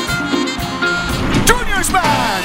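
Live dance band playing, with a trumpet section.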